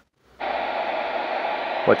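Capello NOAA weather radio's speaker switching on with a sudden burst of steady static hiss about half a second in. No broadcast voice can be heard in the noise.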